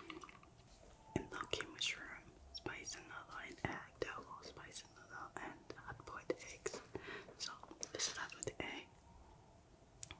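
A woman whispering, with a few small clicks in between; the whispering stops near the end.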